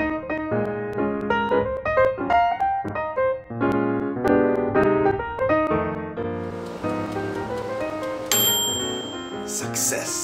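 Piano background music, note after note. About two-thirds through a hiss comes in under it, and near the end a high steady tone sounds for about a second, followed by a short burst of noise.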